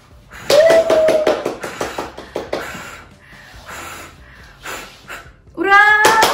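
Birthday cake candles blown out, followed by a short held cheer and a quick run of clapping that fades out by about two and a half seconds in.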